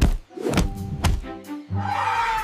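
Cartoon thunk sound effect as two characters bump heads, loud at the start, with a second, lighter knock about a second later, over background music.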